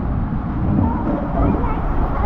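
An inner tube riding down an enclosed tube waterslide, with a steady low rumble of rushing water and the tube running over the slide surface. Voices call out over it.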